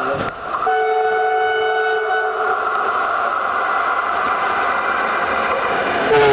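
Train horn blown once for about two seconds, starting about half a second in, over the steady rolling noise of the moving train.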